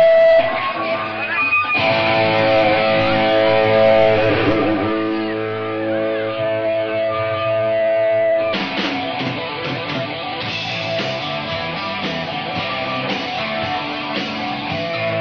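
Rock music led by electric guitar: long held notes from about two seconds in, then a busier, rhythmic full-band part from about eight and a half seconds.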